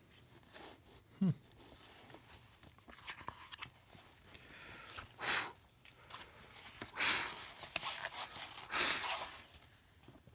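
Paper handling of a picture book: small clicks and three soft swishes of paper, about two seconds apart, as pages are turned or unfolded. A brief hummed 'hmm' comes about a second in.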